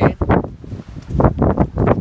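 Gusty storm wind buffeting the phone's microphone in loud, uneven blasts of low rumble.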